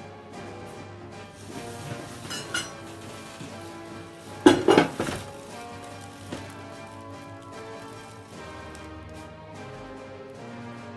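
Plastic bags and sheeting crinkling and rustling as they are handled, loudest in a short burst about four and a half seconds in, over background music.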